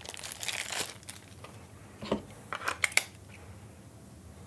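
Clear plastic bag crinkling as a handheld radio battery is unwrapped by hand, followed by a few sharp clicks about two to three seconds in.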